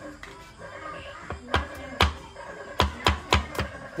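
A large knife chopping shallots on a wooden cutting board: about seven sharp knocks with a dull thud, irregularly spaced, starting about a second in and coming faster in the second half, over background music.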